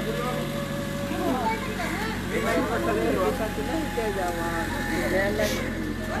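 Several people talking over one another, with a vehicle engine idling steadily underneath.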